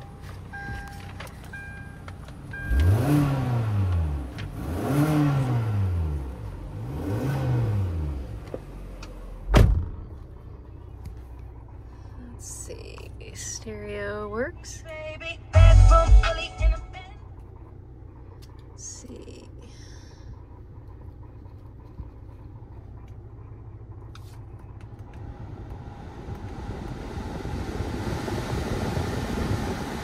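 A warning chime beeps steadily for the first couple of seconds. The 2012 Kia Sportage's 2.4-litre four-cylinder engine is then revved three times, each rev rising and falling, followed by a sharp thump. Later the car radio plays briefly, with a loud thump during it, and the engine idles steadily while the ventilation fan grows louder near the end.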